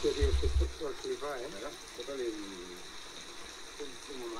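Mostly speech: men talking in Spanish on a camcorder recording, over a steady hiss, with a brief low rumble in the first second.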